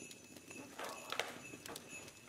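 Brown paper takeaway bag rustling and crinkling faintly as it is opened, with a few short crackles.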